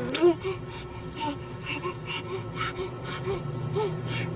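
A five-month-old baby cooing and grunting softly, a string of short little vocal sounds about every half second.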